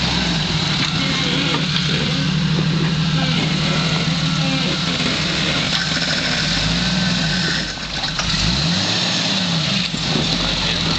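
Jeep Wrangler YJ's engine running at low speed as the locked Jeep crawls over rocks, with its pitch rising and falling several times in the second half as the driver works the throttle.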